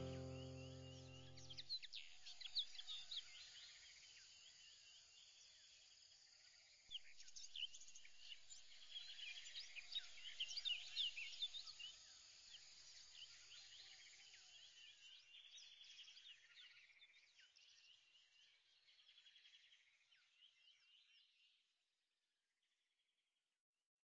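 Faint birdsong, many short chirps and calls overlapping, gradually fading out near the end. The last sustained notes of a music track die away in the first two seconds.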